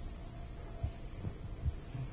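Handheld microphone handling noise: three soft low thumps, spaced under half a second apart, in the second half, over quiet room hiss.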